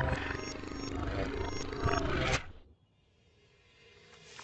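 Cartoon soundtrack of busy music and sound effects that stops abruptly about two and a half seconds in. A second of near silence follows before the sound starts to rise again at the scene change.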